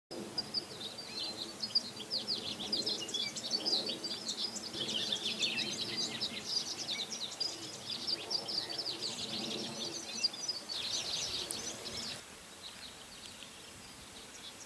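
Songbirds chirping and twittering, many quick calls overlapping in a busy chorus that stops about twelve seconds in.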